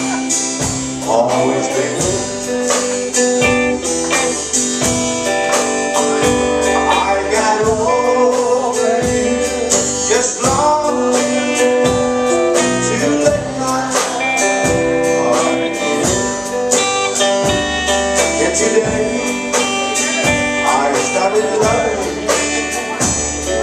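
Live country-blues band playing with electric and acoustic guitars over a steady beat, and a voice singing the lead.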